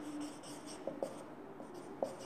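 Marker pen writing on a whiteboard: faint, scratchy strokes with a couple of small taps about a second in.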